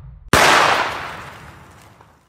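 A single gunshot about a third of a second in, with a long echoing tail that fades away over about a second and a half. The end of the music's last notes dies out just before it.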